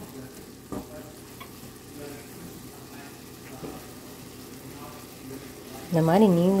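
Wooden spatula stirring chopped ridge gourd, onion and grated coconut in a nonstick pan, over a gentle steady sizzle of frying, with a few soft scrapes and knocks.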